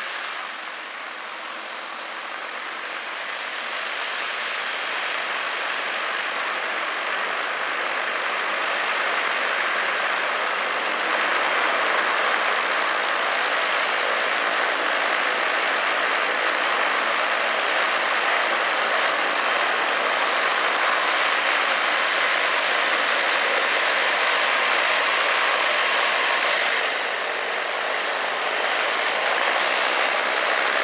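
Light aircraft's piston engine and propeller running at taxi power. It grows louder over roughly the first twelve seconds as the aircraft comes closer, then runs steadily, dipping briefly a few seconds before the end.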